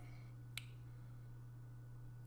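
A single sharp click about half a second in, over a faint steady low hum: a mouse click on the computer.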